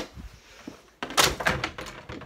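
A quick cluster of knocks and rustling scuffs starting about a second in: handling noise as a hat is taken off and moved near a table.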